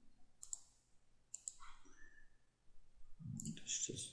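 Two faint computer mouse clicks about a second apart, followed near the end by a brief low vocal sound.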